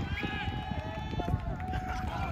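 Players shouting calls across a rugby pitch: a short call, then one long drawn-out call, over an irregular low rumble.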